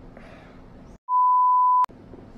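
A single steady electronic beep, one pure high tone lasting under a second, edited into the soundtrack: the sound drops out just before it, and it ends in a sharp click.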